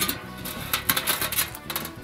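Metal rattling and a quick run of sharp clicks as the steel middle section of a bullet smoker, with its cooking grate, is set onto the charcoal base; the clatter dies away about one and a half seconds in.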